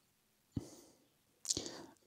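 A short mouth click about half a second in, then a second click and a breath drawn in near the end, just before the narrator speaks again.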